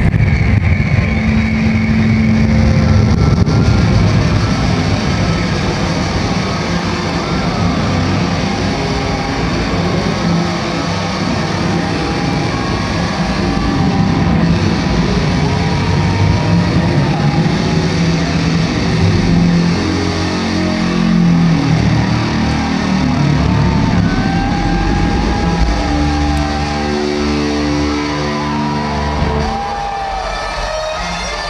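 Loud distorted electric guitar solo played live through a concert PA, with long held and bending notes over a rumbling low end. Near the end it turns to a run of sustained chords.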